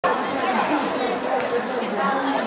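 Football match ambience: many voices from spectators and players chattering and calling indistinctly, cutting in suddenly at the start.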